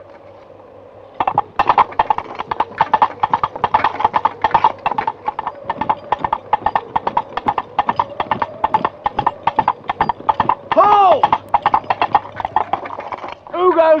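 Two coconut halves banged together to mimic a horse's hooves, a quick, even clip-clop that starts about a second in.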